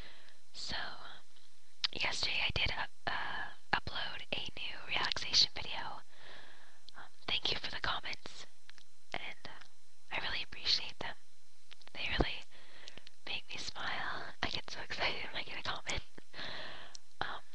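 A person whispering, speaking in short bursts throughout, with a faint steady low hum underneath.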